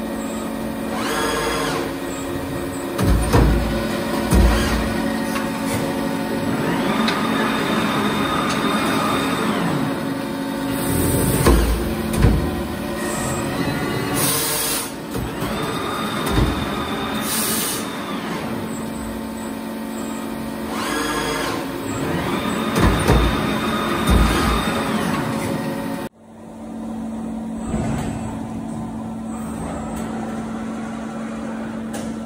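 Prima Power PSBB automatic punch-shear-bend sheet-metal line running through its cycle. Drive whines rise and fall in pitch as the manipulator and bending tools travel. Heavy thumps come in pairs, and short hisses of air sound over a steady electric hum. Near the end the sound breaks off abruptly and resumes as the steady hum alone.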